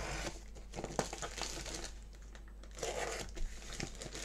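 Parcel packaging being opened by hand: tape and wrapping crinkling and tearing in irregular short rustles as it is pulled off a small box.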